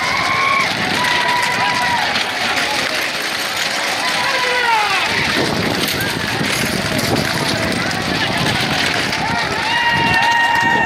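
Spectators shouting long, held cries as racing bullock carts go by. From about five seconds in, the bullocks' pounding hooves and the rumble of the cart wheels grow loud as teams pass close.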